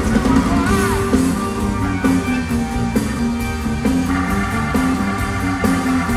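Live rock band playing an instrumental passage, with guitar, a moving bass line and a steady drum beat. There are gliding, bent notes near the start, and sustained chords come in about two-thirds of the way through.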